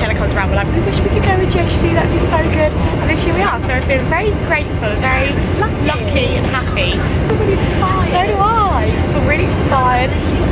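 A woman talking, with the steady low drone of an airliner cabin underneath.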